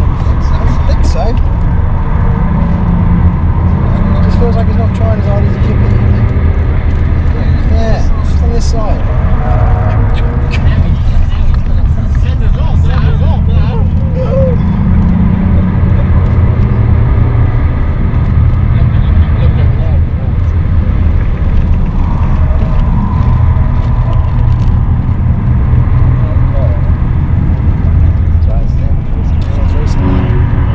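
Cabin noise of a BMW 530d at speed: its three-litre straight-six turbodiesel running steadily, with heavy road and wind noise, and people's voices and laughter on and off over it.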